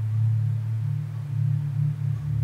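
Ambient meditation background music: a low, steady sustained drone.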